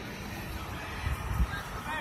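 Steady background noise with a couple of low thumps a little after a second in, then a brief, high, pitched shout near the end.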